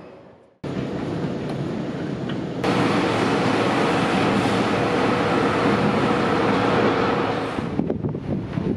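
A Sydney Trains electric train running past close by: a steady rumble of wheels on rail with a held motor hum. It comes in after a brief silence, gets suddenly louder under three seconds in, and cuts off just before the end.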